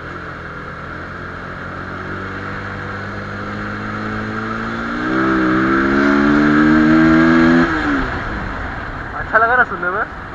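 Motorcycle engine accelerating: its pitch climbs slowly, then the engine gets louder and rises faster about halfway through before the throttle shuts near eight seconds and the revs fall away. A brief voice near the end.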